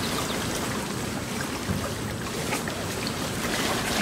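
Shallow, choppy water lapping and splashing against rocks at the water's edge: a steady wash with small scattered splashes.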